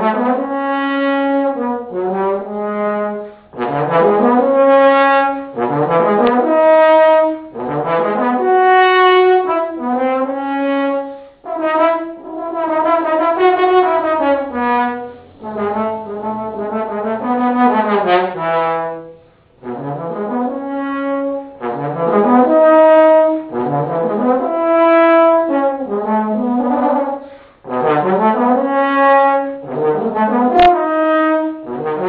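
Solo trombone playing a slow melodic piece: phrases of held notes joined by sliding pitch changes, broken by short pauses for breath.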